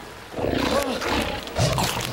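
A monster's growling roar, a cartoon sound effect, starting about a third of a second in and rising to a louder second burst near the end.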